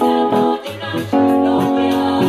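Electronic keyboard playing held chords in a gospel style, moving to a new chord about a second in.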